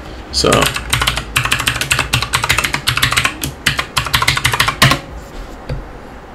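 Typing on a computer keyboard: a quick, uneven run of keystrokes, a password entered at a terminal prompt. It stops about five seconds in.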